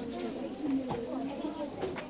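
Indistinct chatter of a crowd of children and adults, many voices overlapping into a general hubbub with no single voice standing out.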